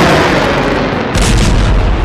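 Explosions: the rumbling tail of a blast dies away, then a second sharp blast a little over a second in, followed by a deep rumble.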